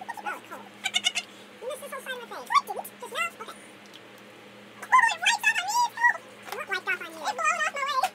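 Fast-forwarded voices of two women chattering and laughing, sped up into high-pitched, warbling squeaks over a faint steady hum.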